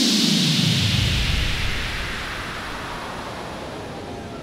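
An electronic whoosh sound effect that sweeps down in pitch from a hiss into a low rumble and slowly fades.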